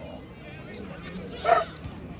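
Open-air background hum of a small football ground, with one short, loud yelp about one and a half seconds in.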